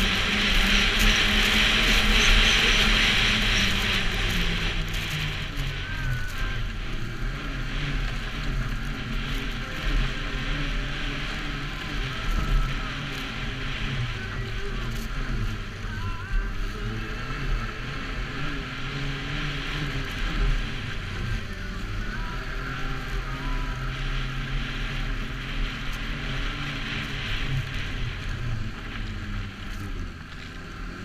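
Snowmobile engine running as the sled travels along a snowy trail, its pitch rising and falling with the throttle. A rushing hiss comes over it, loudest in the first few seconds.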